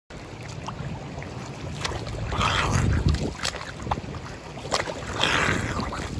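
Water splashing from a swimmer's front crawl strokes, swelling twice about two and a half seconds apart, with scattered small splashes over a steady low rumble.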